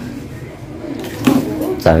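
Light clicking and rattling of makeup tools being taken out of a makeup case, under soft voices in a small room, with a voice speaking again near the end.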